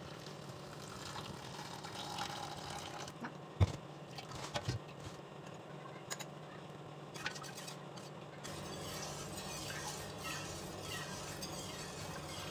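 Steeped green tea being poured and strained through a mesh filter bag into a stainless steel pot, faint pouring and dripping, with a couple of sharp knocks between about three and a half and five seconds in.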